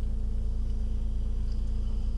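Steady low drone of a car's engine and road noise heard inside the cabin, with a faint high whine over it.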